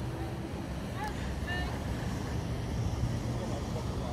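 Steady low rumble of a passing river boat's engine, with wind on the microphone and a brief faint voice about a second in.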